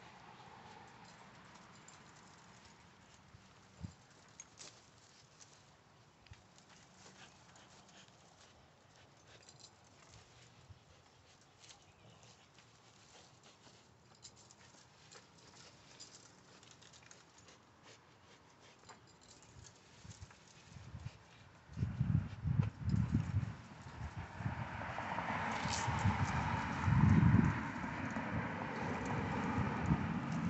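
Dog tugging and jumping on a spring-pole rope: faint scattered taps at first, then from about twenty seconds in louder, irregular thumps and rustling.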